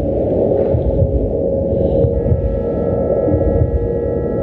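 A loud, deep, throbbing drone from sound-therapy meditation audio. A steady held tone runs through it, and two higher sustained tones like a singing bowl or gong come in about two seconds in.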